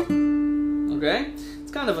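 Takamine acoustic guitar: a single fretted note is picked at the start and rings on, slowly fading, closing a short harmonized country lick.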